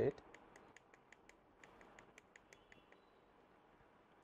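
Faint plastic clicks of a digital alarm clock's MIN/DATE button being pressed over and over, several a second, stepping the minute setting forward.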